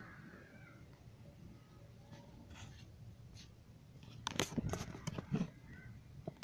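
Faint room noise, then a cluster of knocks and rustling about four seconds in: the sound of someone moving with a handheld camera and stepping outside.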